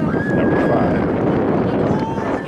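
Spectator voices and shouting at a football game, with one long, slightly falling high tone held for well over a second.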